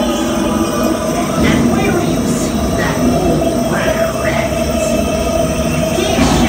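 Log flume boat riding up a lift hill on its conveyor chain: a steady mechanical rattle and hum. Recorded ride voices and music play over it.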